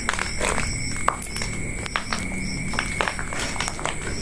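Footsteps crunching irregularly over dry leaves and rubble. Behind them, night insects keep up a steady high chirping, repeating a few times a second.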